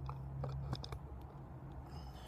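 Handheld camera being tilted and held: a few soft clicks and rubs of handling over a low steady hum.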